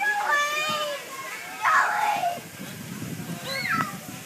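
A young child's short, high-pitched wordless calls and babble: one drawn-out call near the start, a brief noisy burst in the middle and a quick rising-and-falling call near the end.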